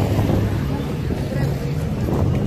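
Busy outdoor street ambience: voices from a crowd over a steady low rumble.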